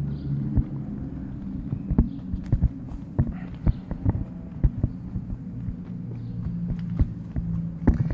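Footsteps of a person walking on a concrete walkway, heard as irregular soft knocks together with phone-handling bumps, over a steady low hum.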